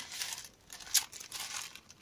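Plastic wrapping of a package crinkling as it is picked up and handled, with a sharper crackle about a second in.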